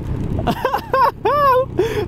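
A voice talking, over the steady hum of the Royal Enfield Himalayan's single-cylinder engine and wind noise while riding.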